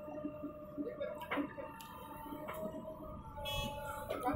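JCB 3DX backhoe loader at work as the backhoe digs and lifts a bucket of soil: a steady diesel engine drone with several held tones above it.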